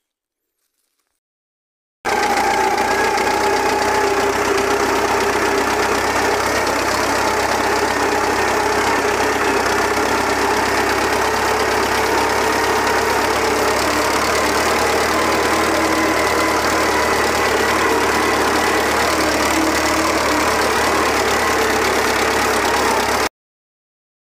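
Valmet farm tractor's diesel engine running steadily while driving along a dirt road, heard loud and close from the driver's seat. It starts about two seconds in and cuts off abruptly near the end.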